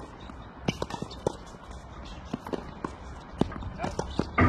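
Footsteps and shoe scuffs on a hard tennis court: a dozen or so light, irregular taps as a player walks and shuffles into position.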